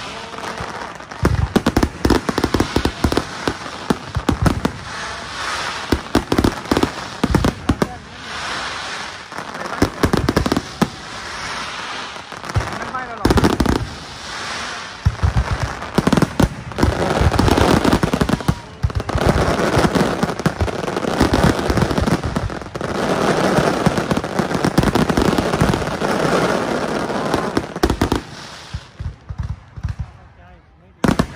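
Fireworks display: aerial shells bursting in quick successions of bangs, then long dense stretches of continuous crackling that die down near the end.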